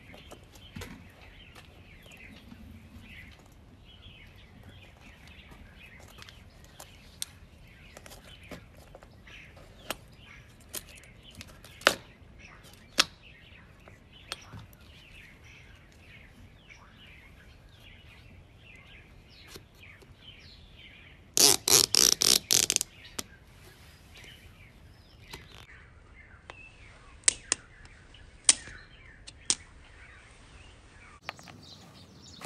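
Plastic straps of a strap toggle bolt clicking as the anchor is worked into a drywall hole: a quick run of loud ratcheting clicks about two-thirds of the way through, with single sharp clicks before and after. Birds chirp faintly in the background.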